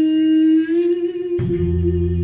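A female singer holds one long sung note, which steps up slightly in pitch partway through. About one and a half seconds in, the band comes in underneath with a low bass note.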